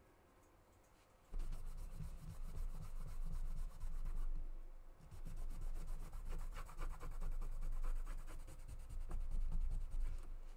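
A brush rubbing paint across a textured paper clay panel on a tabletop, a dry scratchy scrubbing with a low rumble through the table. It starts about a second in, breaks off briefly around the middle, and carries on.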